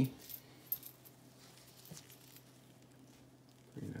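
A few light clinks of pennies knocking together as they are picked from a small pile on a cloth towel, over a faint steady low hum.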